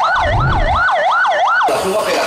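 Police vehicle siren on a fast yelp, its pitch sweeping up and down about three times a second, cutting off suddenly near the end.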